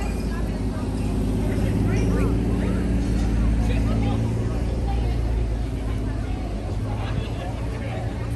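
Busy street sound: scattered voices of people walking and talking, over a vehicle engine running close by that swells in the middle and then eases off, with a steady low rumble underneath.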